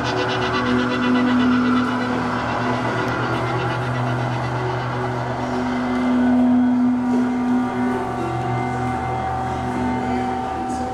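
Many electric guitars holding sustained drones and screeching together in a noise-music piece: a dense, steady wash of held tones. A low tone swells about two thirds of the way through, and a higher held tone comes in soon after.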